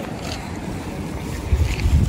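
Wind buffeting the microphone: a rough low rumble that gusts louder near the end.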